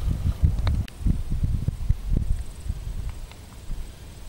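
Wind buffeting an outdoor camera microphone: irregular low rumbling thumps that ease off after about three seconds.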